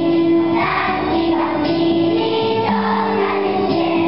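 A large choir of primary-school children singing a Christmas song together, holding long sustained notes.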